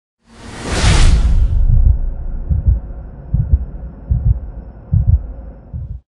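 Intro sound effect: a whoosh swells up and fades in the first second and a half over a low rumble, then four low double thumps, like a slow heartbeat, come about 0.8 s apart.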